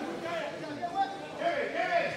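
Indistinct voices calling out at a football ground, several short calls without clear words.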